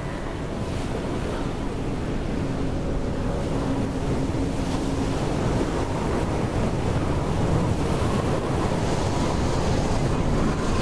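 Steady rushing of sea waves and wind, slowly growing louder.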